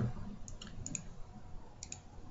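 A few light computer-mouse clicks, a pair of them close together near the end, as menus are opened and a tab is selected.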